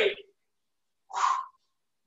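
A man's voice finishing a phrase, then silence, then one short breathy vocal sound, like an exhale, just past a second in.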